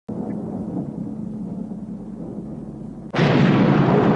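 Logo-intro sound effect: a low, steady rumble, then about three seconds in a sudden much louder thunder-like boom that keeps going, the lightning strike of the logo reveal.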